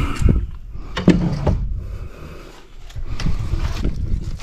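Wind rumbling on the microphone, with two sharp knocks, one just after the start and one about a second in.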